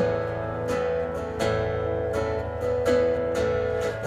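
Acoustic guitar strummed in slow, even chords, about three strums every two seconds, each chord ringing on into the next.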